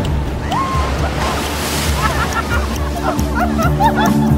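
Ocean surf washing and breaking on a beach, with a wave crashing about a second and a half in, under short calls from young people's voices. Music with held low notes builds up toward the end.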